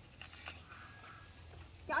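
A plastic drink bottle's screw cap twisted open, with a few faint clicks as the seal gives. A short faint whine follows near the middle.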